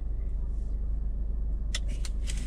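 Steady low rumble of an idling car heard from inside the cabin, with one sharp click near the end.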